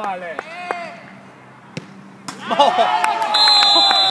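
A few sharp knocks of a football being kicked, then a loud, drawn-out shout from a player, with a shrill high whistle over the last second.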